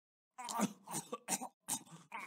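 A cartoon king's voice coughing in a hacking fit of about four short coughs, starting about half a second in.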